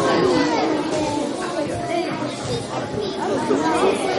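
A crowd of children chattering at once, many voices overlapping with no single speaker standing out.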